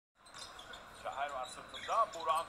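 Basketball game sound: players' sneakers squeaking on the hardwood court in a few short squeaks, the loudest near the end, over faint arena background noise.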